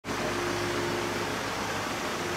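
Jeep Compass 2.0-litre diesel engine running as the SUV creeps forward at low speed, a steady hum over an even hiss.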